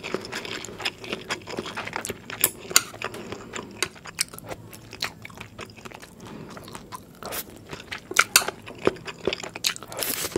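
Close-miked eating sounds of a person chewing a mouthful of spicy Indomie mi goreng noodles with vegetables: irregular wet clicks and smacks from the mouth, with metal chopsticks on the plate as more noodles are gathered.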